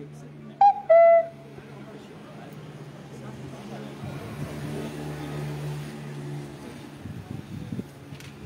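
Two short, loud, high-pitched toots about half a second apart, the first very brief and the second held a little longer. They sound over a steady low hum and background voices.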